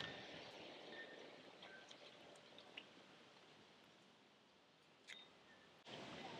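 Near silence: faint outdoor background that fades lower, with a few faint short high chirps and ticks.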